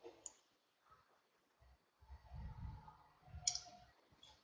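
Faint clicks in a quiet room: a small one shortly after the start and a louder one about three and a half seconds in, with faint low muffled sounds between.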